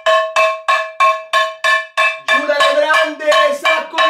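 Wooden spoon banging on a metal frying pan, fast even strikes about four times a second, each leaving a short metallic ring.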